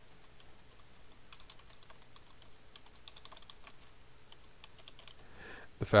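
Typing on a computer keyboard: a quick, faint run of key clicks that starts about a second and a half in and goes on for about three and a half seconds.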